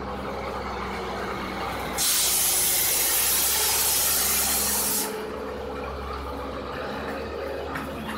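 Darjeeling Himalayan Railway NDM6 diesel locomotive running with a steady low hum as the train moves along the platform. About two seconds in, a loud hiss of released air starts, lasts about three seconds and cuts off sharply.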